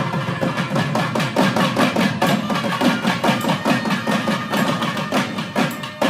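Periya melam temple ensemble: thavil barrel drums playing fast, dense strokes under nadaswaram double-reed horns holding long notes.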